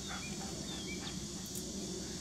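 Steady high-pitched chorus of insects such as crickets, with a few brief chirps over it.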